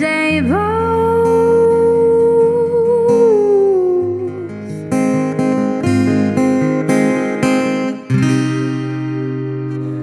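A young woman's voice holds one long sung note with a slight waver over strummed acoustic guitar, the note falling away after about three seconds. The guitar then strums several chords alone, about two a second, and lets a final closing chord ring out to end the song.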